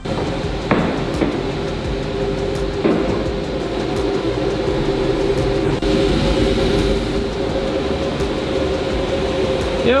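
Steady hum of workshop dust-extraction machinery running, with a low, even tone, and a few light knocks in the first few seconds.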